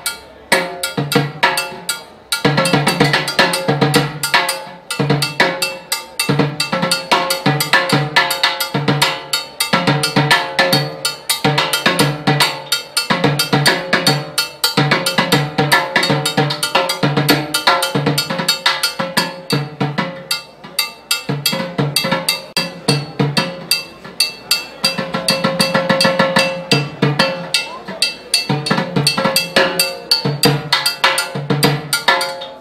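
Timbales solo on a pair of chrome-shelled LP timbales played with sticks: quick, dense strokes on the ringing drumheads, shells and a mounted block, with a fast roll on one drum toward the end.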